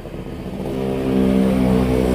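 A motor vehicle's engine hum, steady in pitch and growing steadily louder.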